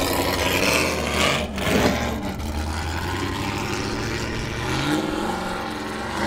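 Trophy truck engine running as the race truck drives off down a dirt track, its note climbing with the throttle about four seconds in.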